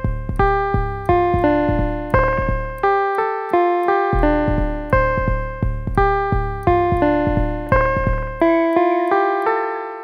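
Background music: a gentle piano tune of evenly spaced struck notes and chords, about two a second, each note dying away, ending on a last chord that fades out near the end.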